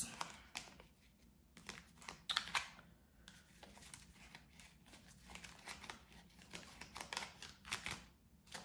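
A deck of Kipper fortune-telling cards being shuffled by hand: faint, irregular clicks and rustles of card edges, with a louder flurry a little past two seconds in.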